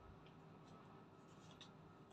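Near silence: faint room hum with a few soft small clicks and light scraping from eating at the table, most of them about a second and a half in.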